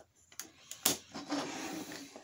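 Plastic Power Rangers Megazord toy pieces clicking and knocking as they are handled and fitted together: a few separate sharp clicks, the loudest a little before a second in, then a soft rubbing of plastic.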